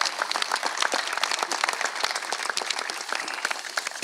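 A crowd applauding: many hands clapping together steadily.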